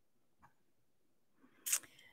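Near silence from a close microphone, with a faint mouth click about half a second in and a short, hissy intake of breath near the end.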